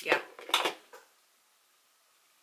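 Two sharp clinks in the first second, of the kind a hard makeup highlighter compact makes when it is handled, over a short spoken "yeah".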